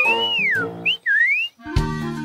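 A cartoon whistle sound effect: one long whistle falling in pitch, then two short rising whistles, over soft background music. Lively music with a steady drum beat comes in near the end.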